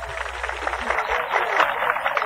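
Audience clapping: a dense, irregular patter of hand claps that thickens about a second in.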